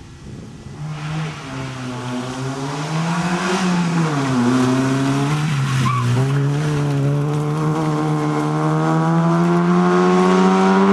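Fiat Cinquecento rally car's engine being driven hard, revs dipping briefly at about four seconds and again near six seconds, then climbing steadily as the car comes closer and grows louder.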